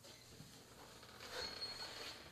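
Faint movement and handling noises: a person walking into a small room carrying an acoustic guitar and settling in at a microphone stand, getting a little louder in the second half, with a brief faint high tone.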